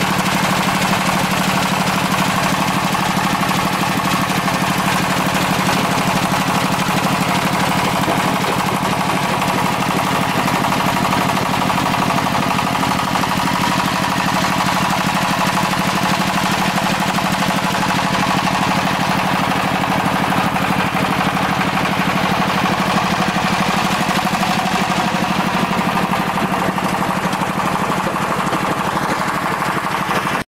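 Small mobile diesel-engine jaw crusher and vibrating screen running, crushing stone. The sound is a continuous, steady mechanical din with a low hum underneath.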